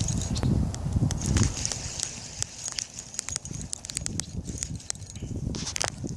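Fishing reel being wound and the rod and phone handled while a small panfish is reeled in and lifted out of the water. The sound is irregular sharp clicks over low rumbling handling noise.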